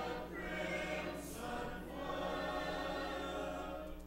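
Church congregation singing a hymn together, many voices in sustained phrases, with a short break between lines near the end.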